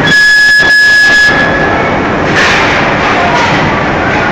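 Loud, steady din of a porcelain factory floor: conveyor machinery running, with the clatter of plates being handled. Near the start a loud, high, steady tone sounds for just over a second, then stops.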